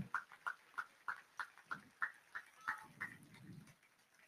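Faint, evenly paced hand clapping, about three claps a second, from an audience responding to a speech. The clapping dies away shortly before the end.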